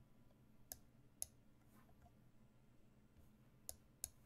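Three sharp computer-mouse clicks, about 0.7, 1.2 and 3.7 s in, as chess moves are made on screen, over near silence.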